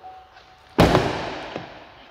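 A single sharp bang of a pickup truck's door about a second in, followed by a short echo that fades over most of a second.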